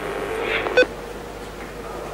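A single short electronic beep on the headset radio link, just under a second in, over a steady hum and hiss on the line.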